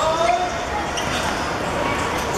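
Thuds of a football being kicked and dribbled on the pitch, under shouting voices of players and spectators.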